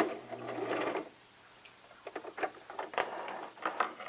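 Electric home sewing machine stitching a short back stitch through canvas, stopping about a second in. A few light clicks and rustles follow as the fabric is pulled free from under the presser foot.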